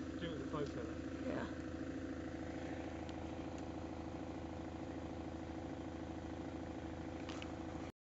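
An engine idling steadily, a low even drone that cuts off abruptly just before the end.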